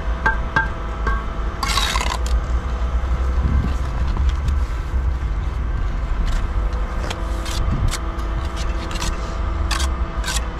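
Steel trowel scraping mortar onto concrete blocks: one loud scrape about two seconds in and several short scrapes and taps near the end, over a steady low drone.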